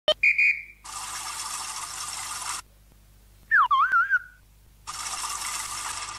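Puppet-show sound effects with no speech: a short whistle tone, then a hiss lasting nearly two seconds, then a loud whistle that slides down in pitch and wobbles, followed by another burst of hiss near the end.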